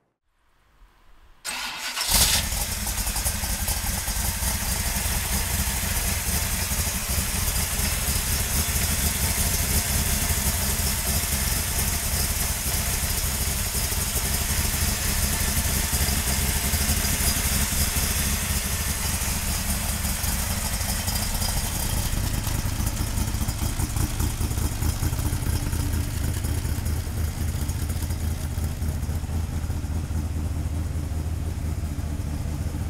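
Roush 427 cubic-inch stroker V8 of a Backdraft Cobra replica, exhausting through stainless side pipes. It starts about two seconds in after a brief crank, then runs steadily at idle. Its sound turns deeper and fuller about three-quarters of the way through.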